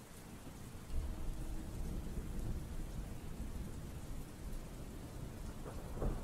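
Steady rain falling, with a low rumble of thunder that sets in about a second in and rolls on.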